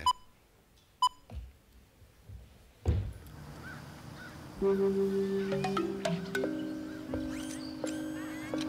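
Two short beeps of a video countdown leader, about a second apart, then a low thump; a few seconds in, the commercial's soundtrack starts over the hall's speakers: music of sustained chime-like tones with short chirps above them.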